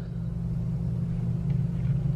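A steady low hum, unchanging background noise with no other distinct sound.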